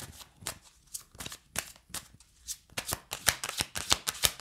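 A deck of cards being shuffled overhand by hand. Single sharp card slaps come about every half second at first, then a quick run of slaps from near three seconds in.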